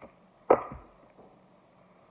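A single sharp thump on the table about half a second in, as the deck of cards is put down, with a few faint clicks of card handling around it.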